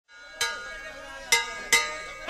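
Logo intro sound effect: three sharp metallic strikes that ring on and fade, the first about half a second in and the other two close together near the end.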